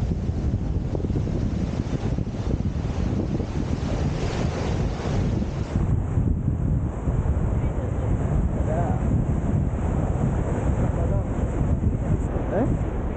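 Wind buffeting the microphone in a steady low rumble, over surf washing up the beach at the water's edge, with one wash louder about four to six seconds in.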